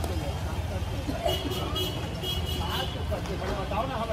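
Roadside street ambience: a steady low traffic rumble with faint voices talking nearby, and a brief run of short high beeps in the middle.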